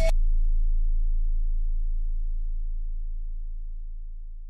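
A single deep sub-bass note from the hip-hop beat, left ringing alone after the drums and melody stop, fading away steadily.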